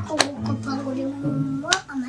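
Two sharp clicks or snaps, about a second and a half apart, over voices.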